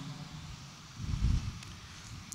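A pause in speech with faint room noise and a brief low rumble about a second in.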